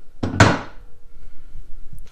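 A single metallic clunk from the steel floor jack being handled, about half a second in, with a short ringing tail.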